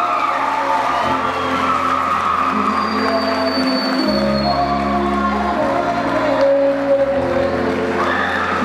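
Keyboard music with sustained low chords that change every second or two.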